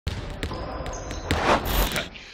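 Intro sound effect of a basketball bouncing on a court, several sharp irregular bounces with high squeaking tones between them, building into a loud swell near the end.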